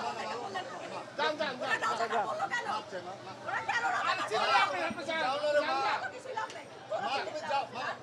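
Several people talking over one another in a heated argument.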